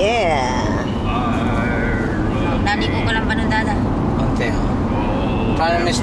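Steady road and engine noise inside a moving car's cabin, with short snatches of a voice at the start, around the middle and near the end.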